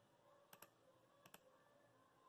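Two faint computer mouse clicks under a second apart, each a quick double tick.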